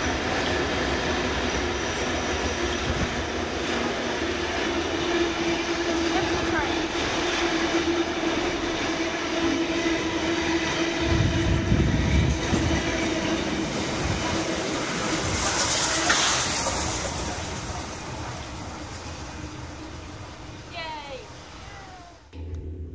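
Heritage passenger train running through the station behind a 422 class diesel-electric locomotive: a steady engine note and the rumble of wheels on rail as the locomotive and carriages pass close by. About 16 seconds in, a loud hiss rises as the 36 class steam locomotive at the rear goes past, then the sound fades away.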